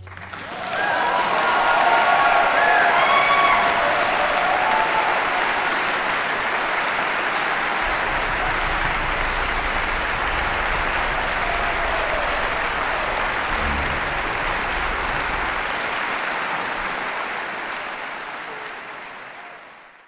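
Concert-hall audience applauding right after the orchestra stops, with a few shouted cheers in the first few seconds; the applause fades away near the end.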